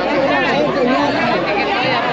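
Crowd chatter: many people talking at once, with overlapping voices and no single voice standing out.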